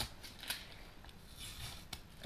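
Masking tape being peeled from the edge of a freshly painted brake disc: a faint crackle with two small clicks, one about half a second in and one near the end.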